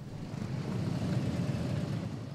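Many motorcycle engines rumbling together as a column of cruiser bikes rides past. The sound swells in over the first half second, then holds steady.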